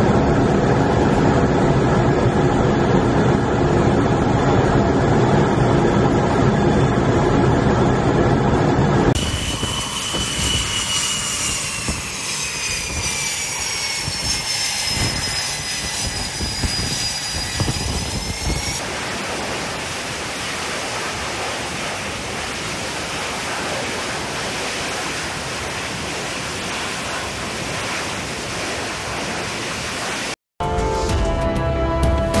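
Jet aircraft noise in two parts. For the first nine seconds, a loud steady drone with engine tones from F/A-18 jets in formation flight. Then, from an F/A-18 on a carrier flight deck at the catapult, a high turbine whine that slowly falls in pitch, giving way at about 19 s to a steady rush of jet noise.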